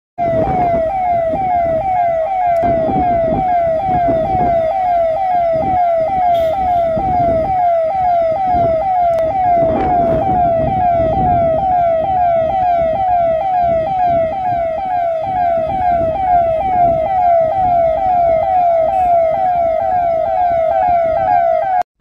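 Police vehicle's electronic siren wailing in a fast, repeating pattern, each cycle dropping in pitch, about twice a second. Road and engine noise runs underneath.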